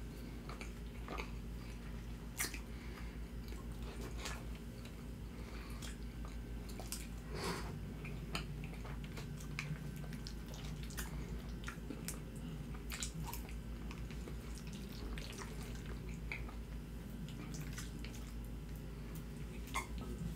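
Close-miked chewing of creamy chicken alfredo pasta: soft wet mouth sounds and scattered sharp little clicks, over a steady low hum.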